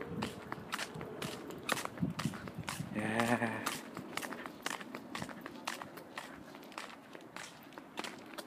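Footsteps walking on a gritty terrace path, heard as irregular short scuffs and clicks along with phone handling noise. A brief voice sound of under a second comes about three seconds in.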